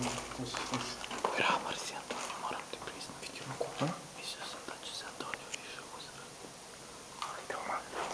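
Hushed whispering voices, over scattered crunches and clicks of footsteps on rubble.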